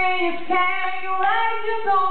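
A woman singing long held notes without words, sliding from one pitch to the next.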